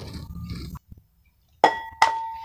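A hen's egg tapped against the rim of a glass mixing bowl to crack it: a sharp clink with a short ringing tone from the glass, about one and a half seconds in, and a second tap at the very end.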